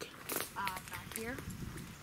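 Voices of people talking at a distance, with brief crackles and rustles of leafy branches close to the microphone.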